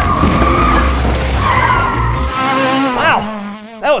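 Race-car sound effect: an engine running with tyres squealing, the low engine rumble cutting off a little past two seconds in.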